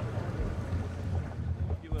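Outdoor waterside ambience: a low, steady rumble with wind noise.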